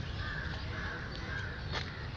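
A crow cawing, a run of four short calls evenly spaced about twice a second, with a brief click near the end.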